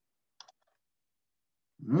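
A quick double click about half a second in, typical of a computer mouse or key being pressed, in otherwise dead silence. A man starts speaking near the end.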